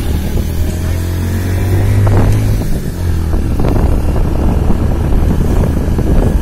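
Motorcycle engine running as the bike pulls away, its pitch rising over the first two seconds, easing briefly about three seconds in, then carrying on. Wind buffets the microphone.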